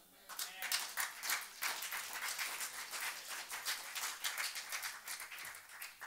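A small group of people clapping, a burst of applause that starts about a third of a second in and lasts about five seconds.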